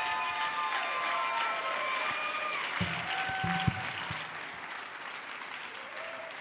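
A congregation applauding, the clapping thinning out over the last couple of seconds, with a few low thumps about three seconds in.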